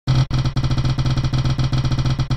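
Spinning prize-wheel sound effect: a fast, even run of short pitched ticks, about ten a second, as the wheel turns.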